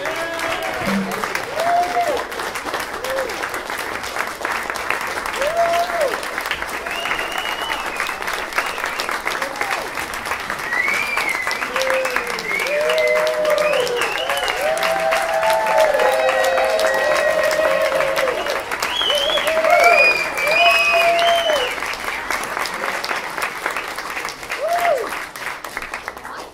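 Audience applause breaking out suddenly, with scattered cheering voices and whoops over the clapping, loudest a little past the middle.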